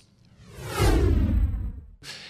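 Whoosh transition sound effect for an animated title card: it swells up from quiet over the first second with a low rumble underneath and falling sweeps, then cuts off suddenly near the end.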